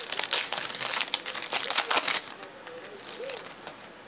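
Foil wrapper of a trading-card pack being crinkled and crumpled in the hands: a dense run of crackles that dies away a little over two seconds in.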